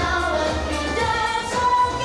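A song with a singer over instrumental backing, playing continuously; the voice holds one long note through the second half.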